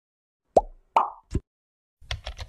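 Three short plop sound effects about 0.4 s apart in an animated intro, the last lowest in pitch.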